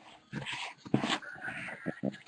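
Cardboard card box being handled and pried open by hand: soft scrapes and several small clicks, with a thin squeak about halfway through.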